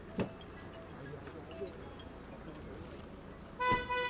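A car horn gives one short toot near the end, the loudest sound here. Shortly after the start there is a sharp knock, and faint voices run underneath.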